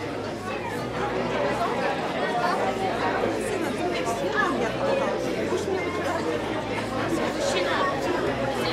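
Steady crowd chatter: many people talking at once, with no single voice standing out.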